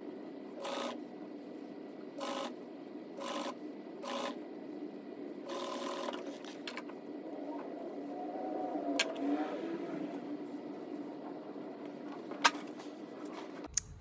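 Juki industrial sewing machine stitching elastic onto a shirt sleeve in about five short bursts in the first six seconds. Two sharp clicks follow later, one past the middle and one near the end.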